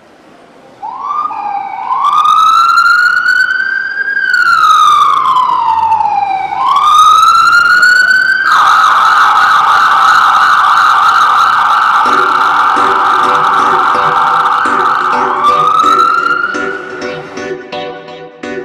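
Electronic emergency-vehicle siren: two slow rising-and-falling wails, then a fast warble held for several seconds, with one last rise before it fades. Music with a beat comes in under it in the second half and takes over near the end.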